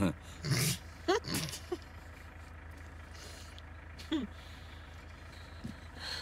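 A few short chuckles from a man and a woman over the steady low hum of a car's engine, heard from inside the cabin.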